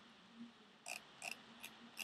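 Quiet room tone with a faint steady low hum, and four brief faint clicks in the second half.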